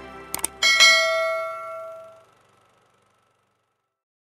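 Subscribe-button sound effect: two quick mouse clicks, then a bell ding that rings out and fades over about a second and a half.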